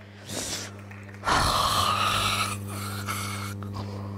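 A woman's loud breathy sigh close to the microphone about a second in, lasting over a second, followed by a shorter breath out, over a steady low hum.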